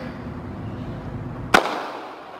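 Starter's gun firing to start a 400 m race: a single sharp crack about one and a half seconds in, with a short echoing tail.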